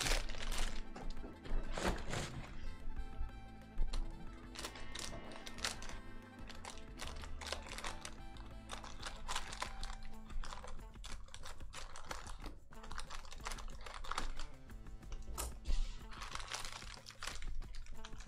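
Background music with a run of light clicks and taps from hands opening a box of foil-wrapped trading-card packs, with scissors snipping through the foil wrap.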